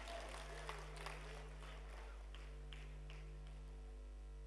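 Light, scattered applause from the audience in a large hall, a few claps thinning out over the first three seconds, over a steady electrical hum.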